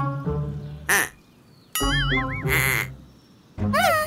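Animated cartoon soundtrack: several short bursts of squeaky, quack-like character vocal sounds, some wavering and some falling in pitch, with light music.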